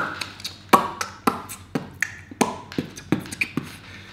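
Loud, wet lip smacks and mouth clicks close to the microphone, about a dozen at an irregular pace, as if smacking the lips while chewing.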